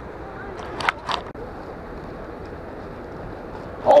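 Steady rush of a river's current, with two short sharp knocks about a second in.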